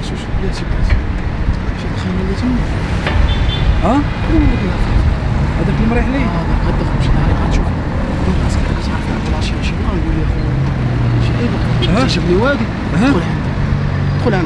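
City road traffic: a steady rumble of cars passing, with scattered voices over it.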